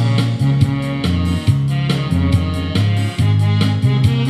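Instrumental trot backing track played through stage speakers, with a prominent bass line and a steady beat.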